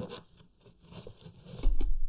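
Rummaging through a box of vintage plastic action figures: a sharp click, then light scrapes and small clicks of plastic being handled. Near the end comes a dull, low thump, louder than the rest.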